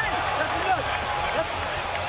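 Indoor arena crowd noise: a steady din of many spectators' voices shouting at once.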